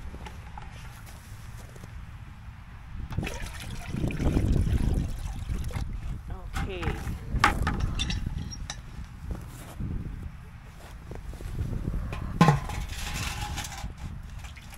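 Water poured from a bucket into a galvanized metal poultry waterer, splashing, then knocks and clanks as the metal tank is handled, with one sharp knock near the end.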